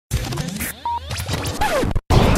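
Edited intro sound effects: scratchy, glitchy noise with sweeping tones and a short high beep about a second in, cutting off suddenly at the end.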